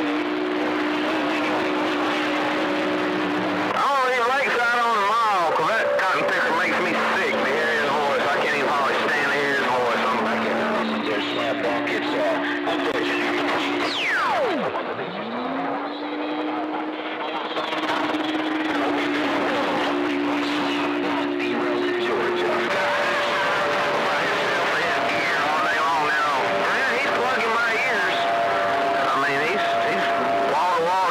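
CB radio receiver audio of a crowded AM channel: several stations' carriers overlap, making steady whistling tones that come and go at different pitches over static and garbled voices. About 14 seconds in, one tone sweeps quickly downward and another slides up and holds.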